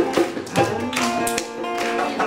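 Music led by a strummed acoustic guitar, with sharp tapping strokes among held notes.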